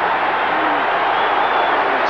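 Boxing arena crowd cheering steadily, with a few scattered shouts in the roar, reacting to an attacking flurry of punches.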